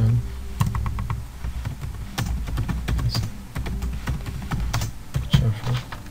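Typing on a computer keyboard: a run of irregular keystrokes.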